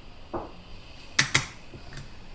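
Coffee being tamped into an espresso portafilter: a soft knock, then two sharp metallic clicks in quick succession a little over a second in.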